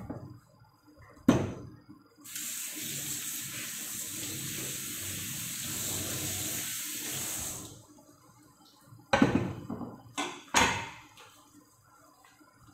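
Kitchen tap water running for about five seconds, starting and stopping abruptly, after a single sharp click. Near the end come two knocks with a brief ring, as of a cleaver being set down on a wooden cutting board.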